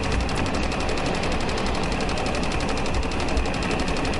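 A Keppe Motor, a small pulsed electric motor, running steadily on battery power, with a rapid, even mechanical ticking of more than ten ticks a second over a low hum.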